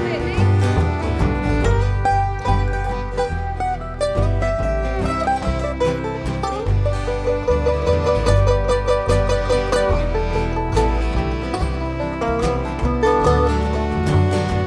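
Live country band playing, with plucked string instruments over a steady bass line; a fast run of quick picked notes comes about halfway through.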